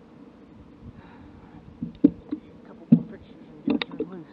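A bass being landed into a boat: a few sharp knocks and thumps, the loudest about two and three seconds in, then a quick pair of knocks near the end.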